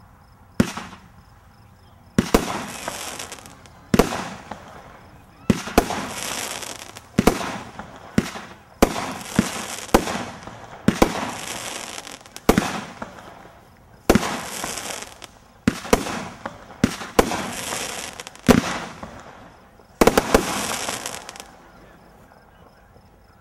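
Cutting Edge 'Magic' consumer firework cake firing: about fifteen sharp launch shots, roughly one every second to second and a half, each followed by a second or so of hissing crackle as the shot breaks in the air. The shots stop shortly before the end.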